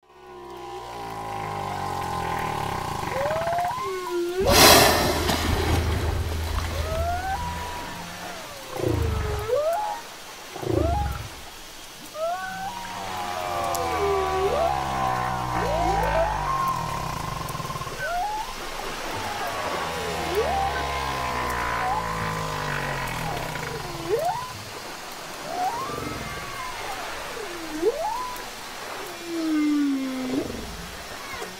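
Whale song: a series of long calls that swoop up and down in pitch, one after another, over a soft musical backing. A loud rushing burst about four and a half seconds in is the loudest moment.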